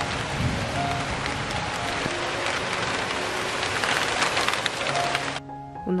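Heavy rain falling on a garden and its fruit trees, a steady dense hiss that cuts off suddenly about five and a half seconds in.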